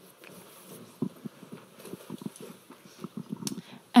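Irregular soft knocks and thuds, several a second, with a sharp click about a second in and another near the end: microphone handling noise and footsteps as a handheld microphone is brought to an audience member.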